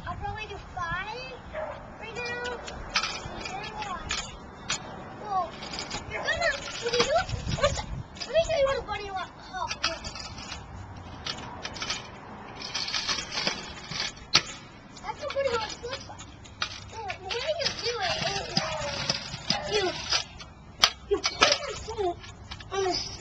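Mostly a child's voice talking. In between are stretches of rolling hiss from a Razor kick scooter's small wheels running over a concrete sidewalk.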